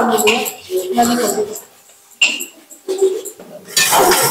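Voices talking in short broken bursts with pauses between, the words not clear.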